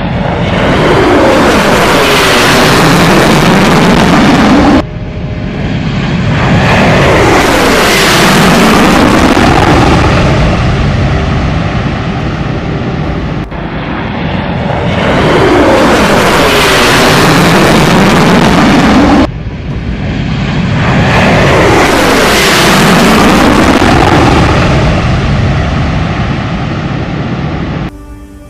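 B-1B Lancer's four afterburning turbofan engines, loud on a takeoff climb-out, the noise sweeping in pitch as the bomber passes. The sound cuts off sharply about five seconds in and swells again, and the same sequence repeats about halfway through.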